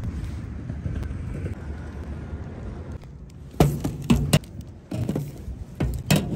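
Steady low outdoor rumble of wind and street noise, then a series of sharp knocks and clanks in the second half from books being pushed through a metal library book-return slot.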